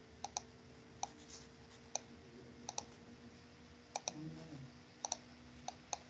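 Computer mouse clicking: a dozen or so faint, sharp clicks at irregular intervals, several of them quick double-clicks.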